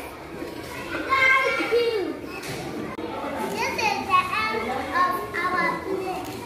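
Children's voices chattering and calling out over one another.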